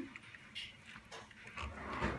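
Faint, brief cries from a young animal being bathed, with a swell of splashing and handling noise near the end.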